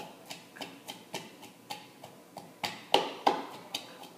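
Wooden pestle pounding garlic cloves in a wooden mortar (a Puerto Rican pilón): a steady run of short knocks, about three or four a second, with two louder strikes about three seconds in.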